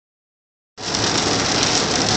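Rain falling steadily on a car's roof and windshield, heard from inside the cabin during a thunderstorm. It starts abruptly just under a second in.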